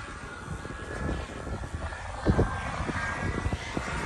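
Turbine engine of a radio-controlled model jet in flight overhead: a steady rushing roar with a faint high whine, growing slightly louder. Wind buffets the microphone.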